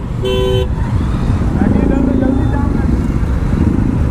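A vehicle horn toots once, briefly, near the start, over the steady low rumble of many motorcycle engines running in packed traffic.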